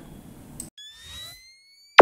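Outro sound effects: a soft whoosh with a thin, slowly rising tone starting about three-quarters of a second in, then a single sharp hit at the very end.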